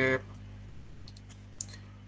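A few faint, sharp clicks over a steady low electrical hum.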